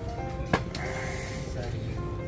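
Background music of held, steady notes that step from one pitch to another. A single sharp click sounds about halfway through.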